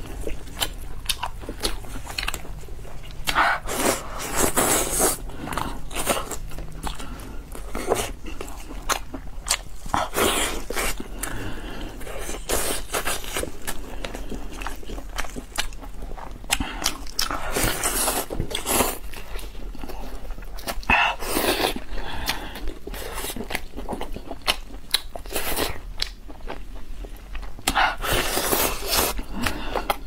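Close-miked biting and chewing of a large spiced pork chop: irregular wet clicks and short bursts of mouth and meat noise, over a steady low hum.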